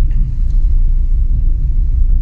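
Loud, steady low rumble with rapid flutter and no clear pitch, heard as the camera moves along the street.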